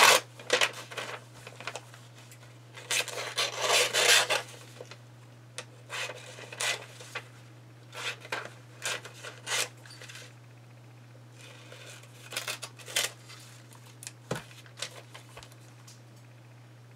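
Glossy magazine pages being flipped and torn by hand: bursts of paper rustling and ripping, the longest about three seconds in, with a steady low hum underneath.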